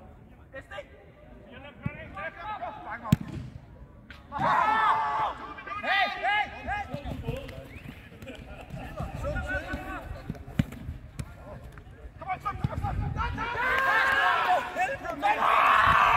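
Footballs being kicked on an outdoor pitch, with sharp thuds, one of them loud about three seconds in. Players call out and shout between the kicks, loudest after about four seconds and again near the end.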